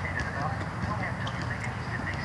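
Steady low rumble of a slowly moving car heard from inside the cabin, with a faint voice over it.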